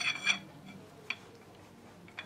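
Steel steering-column parts, the shaft and its nut, being handled. A brief metallic ring dies away at the start, then there is one sharp click about a second in and a few faint ticks.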